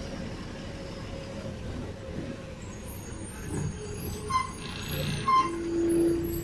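Bus engine running with a steady low rumble, heard from inside the moving bus. Near the end come a few short pitched tones, the last a longer low held one.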